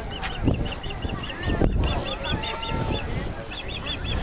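Rapid runs of short, high honking calls, about five a second in bursts of several, each note rising and falling, over wind rumbling on the microphone.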